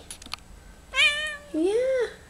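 Bengal cat giving one short meow about a second in.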